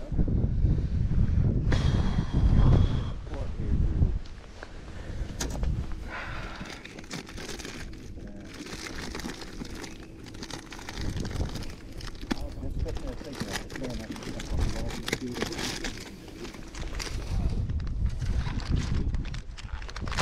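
Plastic bags of soft-plastic fishing baits crinkling and rustling as they are handled and dug through. There is low wind rumble on the microphone in the first few seconds.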